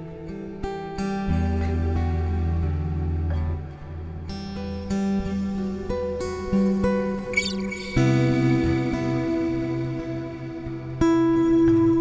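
All-mahogany acoustic dreadnought guitar fingerpicked slowly: ringing single notes and chords over low bass notes. A brief string squeak comes a little past halfway, and fuller, louder chords come in about eight and eleven seconds in.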